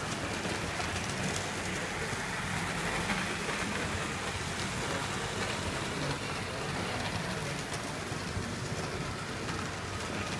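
Model train running on the layout track: a steady rushing whir of its motor and wheels, with faint scattered ticks.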